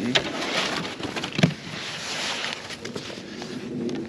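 Snow brush sweeping and scraping wet snow off a truck's windshield: an uneven brushing hiss with scattered knocks of the brush, one sharper knock about a second and a half in.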